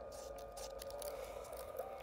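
Faint scraping of a craft knife blade drawn through cardstock along a steel ruler, over a steady low hum.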